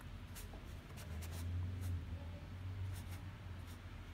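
Ink brush dabbing and dragging on paper: a series of short, faint, scratchy strokes of the bristles against the paper, over a low steady hum.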